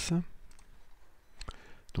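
A few separate computer mouse clicks, spaced out over a couple of seconds.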